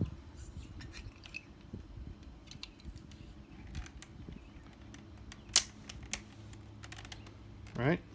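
Small plastic clicks and handling as a clear plastic gimbal lock is fitted onto a DJI Phantom 4's camera gimbal, with a sharp snap about five and a half seconds in and a lighter click half a second later as it seats.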